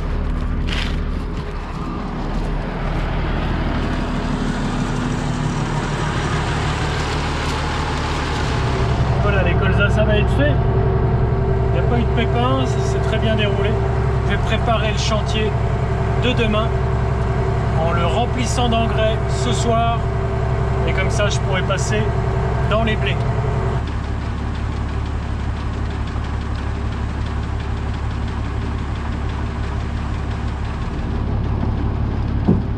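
Case IH tractor engine running steadily, heard from inside the cab; its note shifts about a third of the way in and again near the end.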